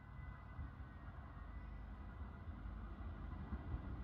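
Low, distant rumble of an approaching LINT diesel multiple unit, growing slowly louder as it nears the station.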